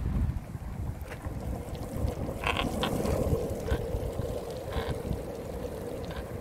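Longboard wheels rolling over coarse asphalt, a steady rolling noise with wind buffeting the microphone, and a few light clicks from about the middle on.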